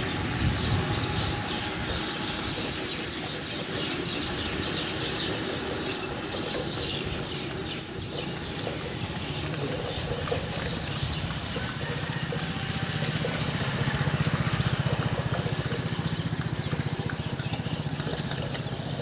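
A steady low drone of moving traffic or the following vehicle, with a handful of short high chirps or squeaks in the middle, three of them sharp and loud.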